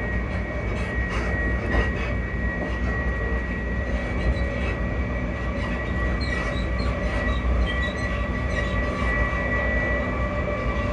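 Passenger train running on the rails: a steady low rumble with a high, even whine over it and a few light clicks from the track.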